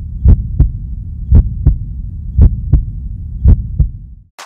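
Heartbeat sound effect: paired lub-dub thumps about once a second over a low hum.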